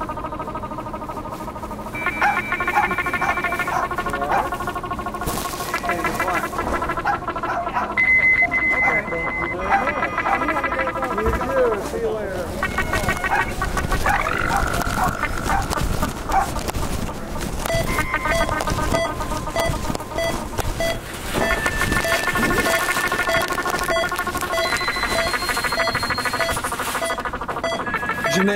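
Layered electronic sound collage: blocks of steady synthesizer tones that change every second or two, with a few gliding pitches and fragments of voices mixed in. In the second half a short beep repeats about twice a second.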